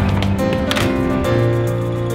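Background music: a solo piano arrangement of a theme tune, with notes and chords changing every half second or so.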